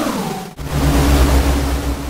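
Electronic sound-design effect: a falling synth sweep bottoms out, cuts briefly about half a second in, then gives way to a sustained deep bass drone with hiss.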